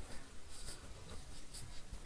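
Quiet room hiss with a couple of faint, soft clicks about a second apart.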